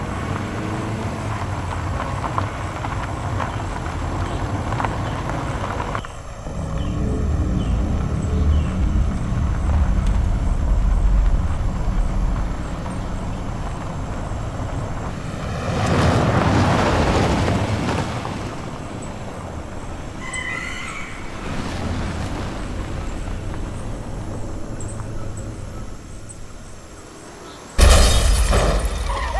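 Jeep engine running steadily as it drives along a dirt forest road, with a louder swell of noise about sixteen seconds in.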